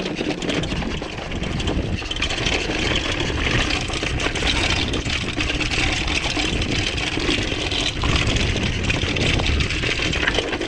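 Mountain bike descending a rocky trail: tyres crunching and rattling over loose stone and rock, with the bike's chain and frame clattering and a low rumble of wind on the camera's microphone, a little louder from about two seconds in.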